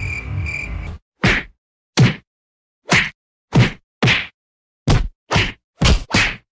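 A rapid series of sharp swish-and-hit sound effects, about eight in five seconds, starting about a second in. Each one cuts off into dead silence before the next, the mark of effects laid in during editing rather than sounds from the room.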